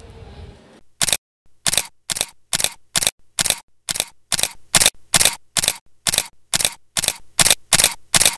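Single-lens reflex camera shutter firing over and over at an even pace, about two short clicks a second, starting about a second in.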